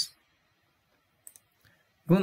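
Near silence broken by two faint, short clicks close together about a second and a quarter in, followed by a fainter third click.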